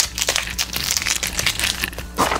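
Crinkling and crackling of a wad of peeled-off adhesive tape being crumpled in the hands, with the cardboard of the mailing box being handled near the end.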